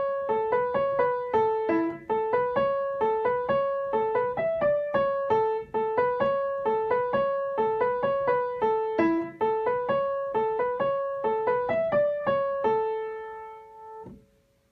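Out-of-tune piano playing a repeated single-note riff in A at tempo, about four notes a second, ending on a held note that rings out and fades near the end.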